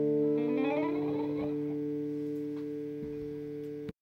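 1963 Gibson SG electric guitar through a combo amplifier, finger-picked: a chord rings and slowly fades, with a brief flurry of higher notes about half a second in. The sound cuts off suddenly just before the end.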